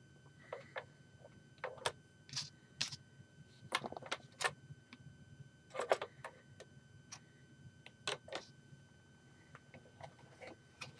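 Plastic Lego pieces clicking and knocking as they are handled and set in place: a string of short, sharp clicks at irregular intervals, some in quick pairs.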